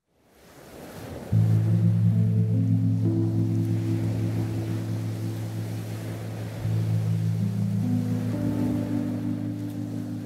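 Sustained keyboard pad chords on a Nord Stage 2 over an ocean-surf wash, the surf swelling in first and the chords entering about a second later. The chord changes about two-thirds of the way through, with further notes added on top.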